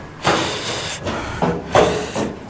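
Footsteps going down metal stairs: several noisy footfalls in a row, with a brief low ring from the metal.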